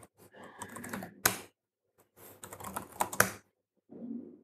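Typing on a computer keyboard: two quick runs of key taps, each ending in a single louder keystroke.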